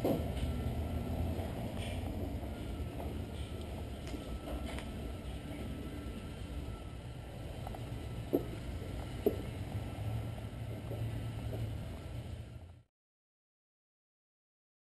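Steady low background hum of the room, with a faint thin whine above it and two faint clicks about eight and nine seconds in; the sound cuts off to silence near the end.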